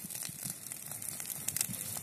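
Dry grass and brush burning, crackling with many small irregular pops.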